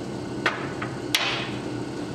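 Knocks of a rebuilt ATV brake master cylinder set down on a steel workbench: a sharp knock about half a second in, then a louder one a little past a second that rings briefly, over a steady low hum.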